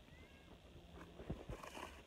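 A faint, brief cat meow against quiet outdoor background.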